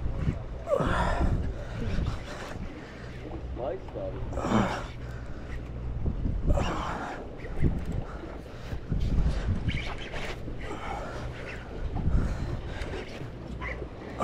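Steady low drone from a deep-sea party boat's machinery, with gusts of wind on the microphone and scattered bursts of voices.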